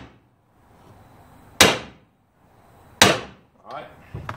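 Hammer tapping on a large impact socket set on a Stihl 028 chainsaw crankcase half, driving the case down over the crankshaft bearing so it seats against the other half: two sharp taps about a second and a half apart, each with a short ring.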